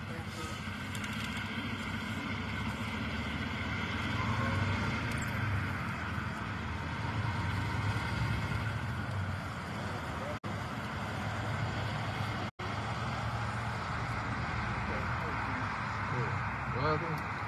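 A steady low rumble with faint voices of people in the background; the sound cuts out briefly twice, about ten and twelve seconds in.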